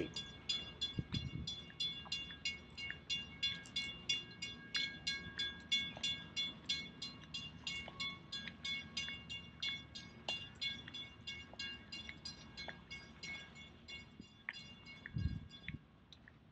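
Light metallic clicking that repeats evenly, about two to three times a second, with a ringing high edge to each click. It fades near the end.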